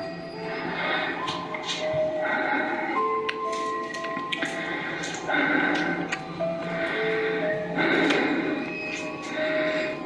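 Background music of slow, sustained notes that change pitch every second or so.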